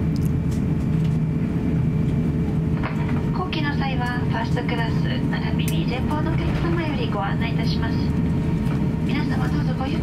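Cabin noise inside an Airbus A350-900 taxiing on the ground: a steady low rumble and hum from its Rolls-Royce Trent XWB engines and airframe, with a fixed droning tone.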